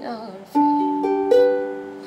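Ukulele strummed: a chord about half a second in, then two more close together, each left to ring and fade.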